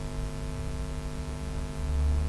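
Steady electrical mains hum with a faint hiss, picked up by the recording's microphone during a pause in speech; a low rumble swells near the end.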